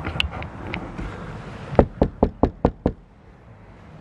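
Six quick knocks on a motorhome's window, rapped in about a second, some two seconds in, to get the attention of someone inside.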